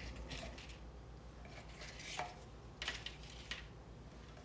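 Faint, scattered light clicks and taps of crisp, partially baked wonton wrapper cups being lifted out of a metal mini muffin tin and set down on a metal baking sheet.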